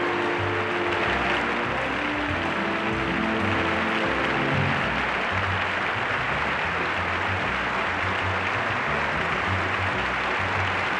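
Audience applause over music. The applause builds about a second in and keeps on, while the music's held notes fade out about halfway through and a low pulse carries on beneath.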